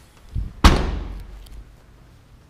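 Rear liftgate of a 2015 Hyundai Elantra GT hatchback pulled down and slammed shut: a soft low thud, then one loud slam that dies away over about a second.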